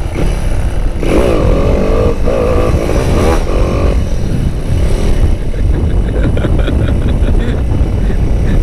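Motorcycle engine running under way, heavily buffeted by wind on the microphone. A wavering engine note stands out from about one to four seconds in.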